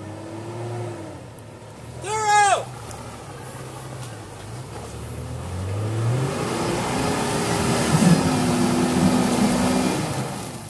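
Jeep Cherokee XJ engine pulling through deep mud, its note rising and getting louder from about halfway through as it revs and approaches. A brief loud shout cuts in about two seconds in.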